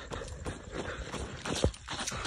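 Irregular soft footsteps and scuffs of someone moving quickly over rough ground, with a sharper knock near the end.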